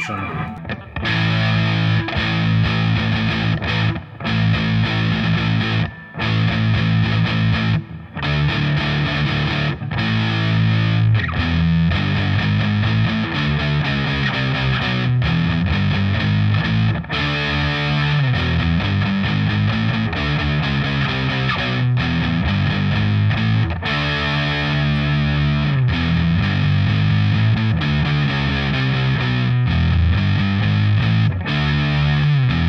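Electric guitar, an Epiphone Les Paul, played through a Pogolab overdrive pedal with its flat switch engaged and the tone knob turned up. It plays driven, distorted riffs and chords, with short breaks every couple of seconds in the first half.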